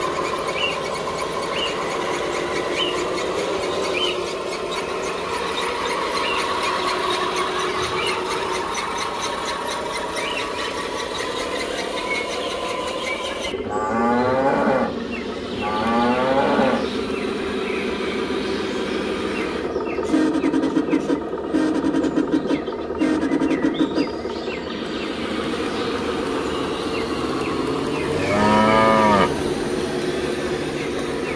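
Cattle mooing: two long moos about halfway through and a third near the end, over a steady mechanical running sound. A run of short rapid pulses comes between the moos.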